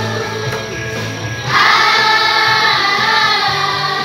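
A children's and youth choir singing an Indonesian Christmas song over instrumental accompaniment with a held bass line. The voices get louder about one and a half seconds in.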